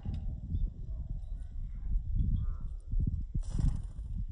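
Wind rumbling on the microphone, with a short rush of wingbeats about three and a half seconds in as a black-capped chickadee takes off from the hand.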